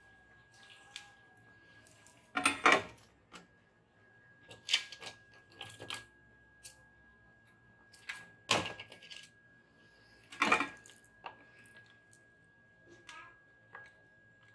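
Tools and parts clattering as they are handled on an electronics repair bench, in several short rattling bursts; the loudest come about two and a half, eight and a half and ten and a half seconds in. Under them runs a faint, steady, high-pitched whine.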